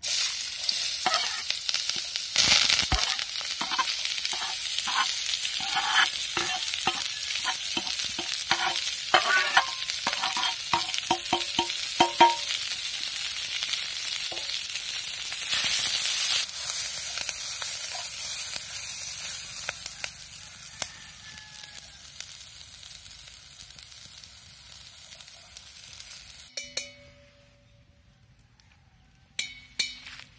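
Chopped shallots, green chillies and spinach hit hot oil in an aluminium kadai and start sizzling loudly all at once. A steel ladle clicks and scrapes against the pan as it stirs through the first dozen seconds. The sizzle then dies down gradually over the second half.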